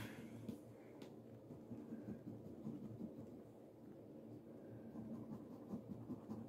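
Faint, irregular scratching and light ticks of a coin on a paper scratch-off lottery ticket.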